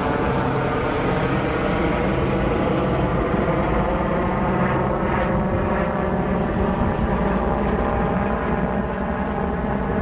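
Steady engine drone, a constant hum of several pitches at an even level.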